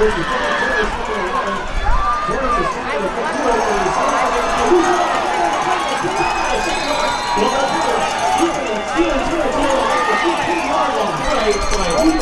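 Crowd of spectators cheering and shouting, many voices overlapping.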